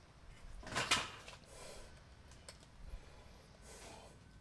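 Brief rustling and a clatter about a second in, then softer rustles near the end: hands handling tools or parts.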